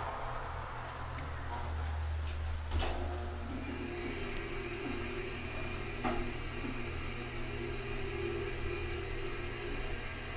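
Elevator heard from inside the cab: a low steady hum, a clunk about three seconds in, then the car travels down with a steady running hum and a faint whine from the drive.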